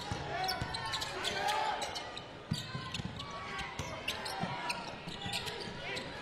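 Basketball dribbled on a hardwood court: a run of sharp knocks, with short sneaker squeaks and background crowd and player voices.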